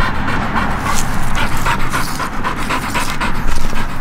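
Pit bull panting hard and fast with its tongue out, about four to five breaths a second, winded from chasing frisbees.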